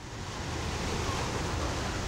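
Ocean surf breaking and washing over rocks, a steady rushing noise that fades in over the first half second.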